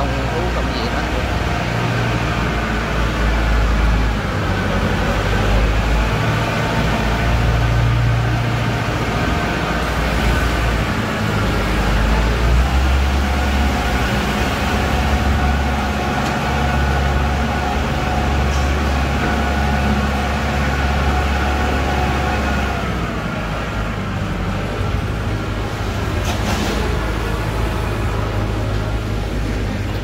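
Kubota L5018 tractor's diesel engine running steadily as the tractor drives slowly with a rotary tiller mounted. Its note drops a little about three-quarters of the way through.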